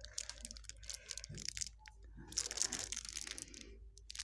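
Clear plastic packet of plastic beads crinkling as it is handled, a run of small irregular crackles.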